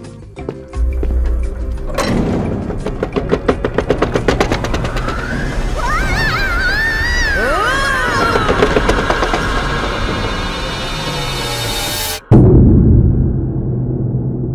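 Produced elevator-ride sound effects over music. A low rumble comes in, then a fast run of clicks and wobbling tones that rise and fall. Near the end everything cuts off suddenly and a loud boom rings out, the loudest moment.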